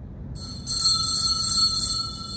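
Small bells shaken, giving a high-pitched ringing that starts a moment in and swells in about four pulses before fading near the end.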